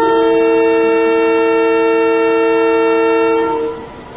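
Diesel locomotive's air horn sounding one long, steady blast of a chord with two strong notes, cutting off about three and a half seconds in.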